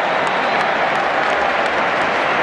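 Football stadium crowd cheering and clapping to celebrate a goal, a loud, steady mass of voices and applause.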